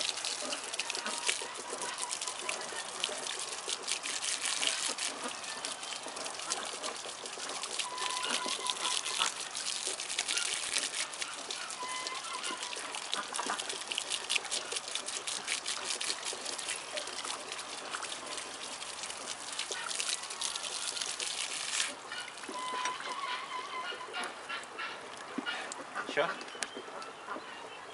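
Water spraying from a hose and splashing: a steady crackling hiss that drops away sharply about four seconds before the end.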